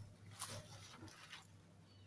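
Near silence, with a few faint rustles and light clicks as a small potted cactus is handled, about half a second in and again a little after a second.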